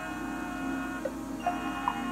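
Marching band music played back through a boombox's speakers: wind instruments hold a sustained chord, with a few short, bright single notes over it about a second in and near the end.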